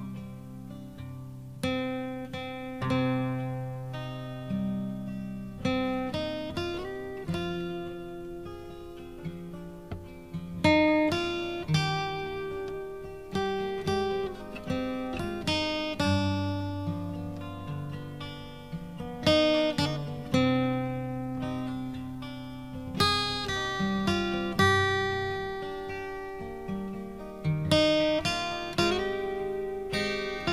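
Acoustic guitar playing an instrumental passage of a recorded song, with picked and strummed notes that ring and fade one after another and no singing.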